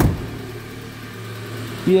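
Saab 9-3 convertible's engine idling with a steady low hum, a sharp knock sounding right at the start.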